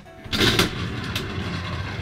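Battery-powered toy slot machine: a sharp clunk as the pulled lever sets the reels going, about half a second in, then a steady whirring rattle as the three reels spin on.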